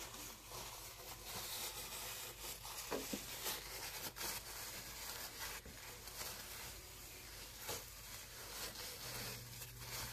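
Faint handling sounds while raw chicken is cut into pieces: soft crinkling and rubbing with a few light knocks of the knife on the board, over a steady low hum.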